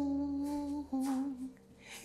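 A woman humming a tune: one long held note, then a shorter, wavering one that breaks off about a second and a half in.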